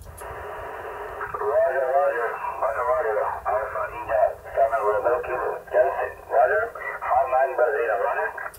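A distant amateur station's voice answering over a transceiver's loudspeaker on the 10-meter band, thin and telephone-like over a steady hiss of band noise.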